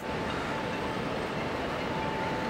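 Steady rushing background noise with a faint, steady high hum running through it.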